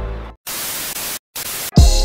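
Two bursts of white-noise static, cut off briefly between them, used as a video transition. Near the end a heavy bass hit lands and electronic background music begins.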